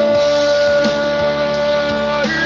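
A man singing one long held note, steady in pitch, over a backing track with guitar.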